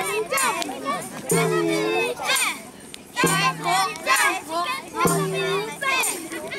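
A group of children's voices chanting and laughing through a camp action song, with a short held low note repeating about every two seconds.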